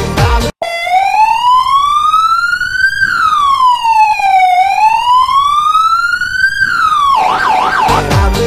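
Police siren wailing, its pitch rising and falling slowly twice, then switching to a quick yelp near the end. It is edited in: it starts right after the music cuts out, and the music resumes as it ends.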